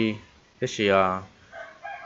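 A rooster crowing faintly in the background, starting about a second and a half in, just after a man's drawn-out spoken word.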